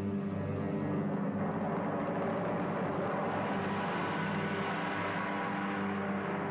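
A car engine running at high revs as the car slides and spins its wheels on loose desert sand, a continuous roar that is strongest in the middle and eases slightly near the end.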